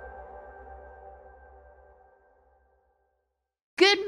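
The last held chord of an intro music sting, several steady synth tones fading out over about two and a half seconds, then about a second of silence. A woman's voice starts right at the end.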